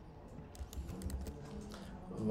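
Faint computer keyboard clicks: a short cluster of quick keystrokes about half a second to a second and a half in.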